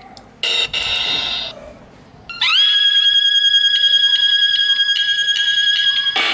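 A small repaired car speaker, wired up for testing, plays a brief snatch of music. Then a steady, high electronic tone slides up into pitch and holds for about three and a half seconds with a slight waver.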